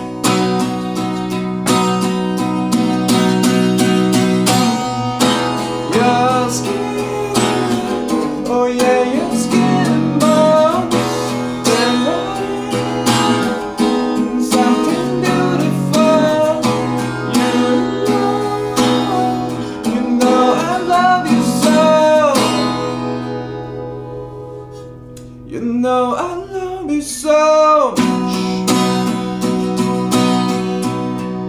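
Acoustic guitar strummed with a man's voice singing over it. About three-quarters of the way through, the strumming thins out and fades. A short sung phrase follows, and steady strumming picks up again near the end.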